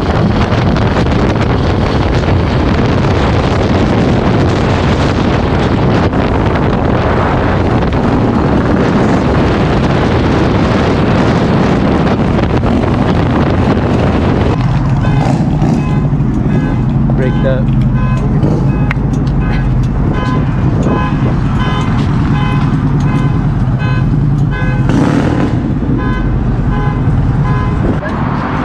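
Motorcycle engine and wind rushing over the microphone while riding at speed, loud and steady. About halfway through, this changes to a steadier low engine drone with short, regular higher tones over it.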